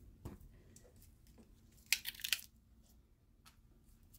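Handling of a shrink-wrapped soap bar: a light knock just after the start, then a short plastic rustle about two seconds in as the wrapped bar is picked up.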